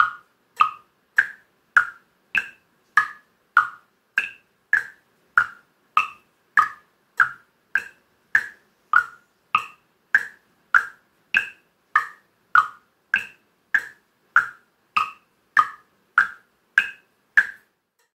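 Wooden frog guiros of different sizes tapped with wooden sticks, one stroke about every 0.6 seconds (about 100 a minute) in an even rhythm. The strokes move between two close pitches, with an occasional higher one.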